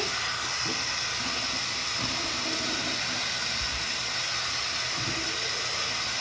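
Steady hiss of water running from a bathroom sink tap.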